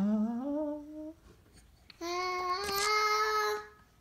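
A voice singing a long, wavering note that glides upward and fades about a second in, then after a short pause a higher note held for about a second and a half.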